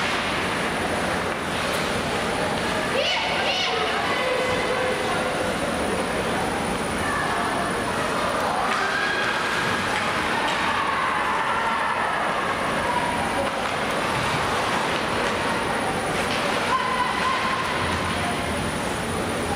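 Ice hockey game sound in a large, mostly empty arena: a steady wash of rink noise with players' distant shouts and calls.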